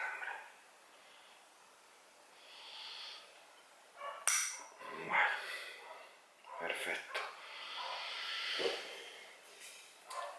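Close-up handling of a trident maple bonsai being wired: quiet rustling and several sharp clicks of thin bonsai wire and a small tool on the branches, the loudest click about four seconds in. Soft breaths between them.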